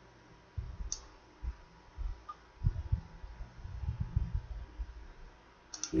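Computer mouse clicking: one sharp click about a second in and a quick pair near the end, with scattered faint low thumps in between.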